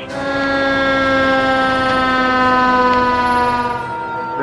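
Fire apparatus siren sounding one long held wail whose pitch sinks slowly, easing off near the end.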